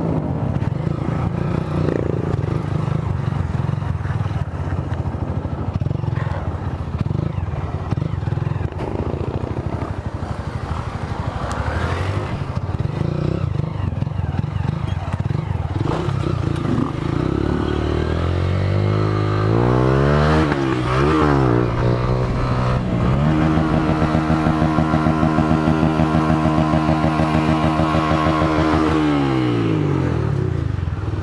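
Motorcycle engine running at low revs while riding, then revved up and down several times, then held at high revs for about six seconds before dropping back near the end.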